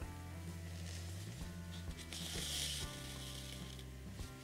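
Embroidery thread drawn through crocheted yarn fabric: a soft hissing rasp about two seconds in, lasting under a second, over quiet background music.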